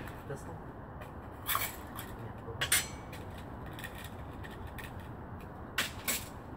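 Handling noises: a few short clicks and knocks, the loudest about two and a half seconds in and another near the end, over a steady low background hiss.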